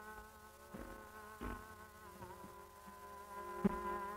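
Old recording of Hindustani classical music: a long note held steady with small ornamental wavers and a brief dip about two seconds in, over a steady drone, with a few sharp drum strokes.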